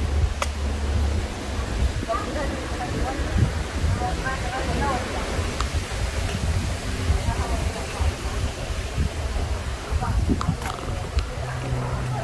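Indistinct voices of people talking over a steady low rumble, with a few faint clicks.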